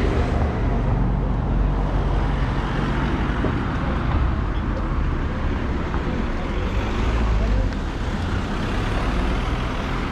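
City street traffic: car engines and tyres running past, a steady rumble heaviest in the low end.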